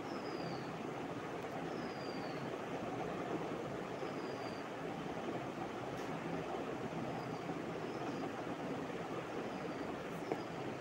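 A steady background hiss and rumble, with faint, short, falling squeaks every second or two: a paint marker's nib dragging across paper as petal lines are inked.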